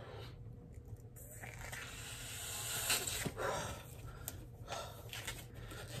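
A man straining to blow up a thin 160 latex twisting balloon by mouth. A faint hiss of forced breath builds over a couple of seconds, then comes a few short puffs and faint clicks.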